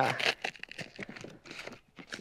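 A DHL courier envelope being handled, its outer skin rustling and crinkling in a run of short, irregular crackles.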